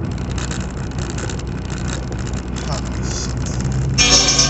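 Car engine running, a steady low hum with rumble heard inside the car's cabin.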